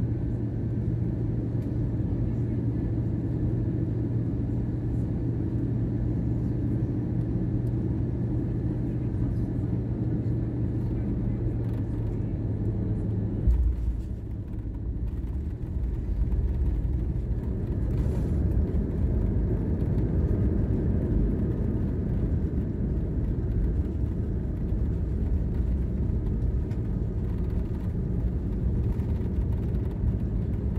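Airbus A320 cabin noise on landing: a steady engine hum on final approach, a single thud a little under halfway through as the wheels touch down, then a deeper, louder rumble as the airliner rolls down the runway.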